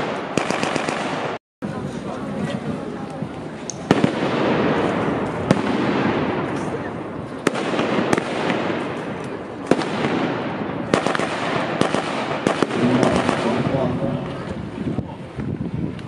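Rifles and a machine gun firing blanks in a staged battle: irregular single shots and short bursts over a busy bed of voices. The sound cuts out completely for a moment about a second and a half in.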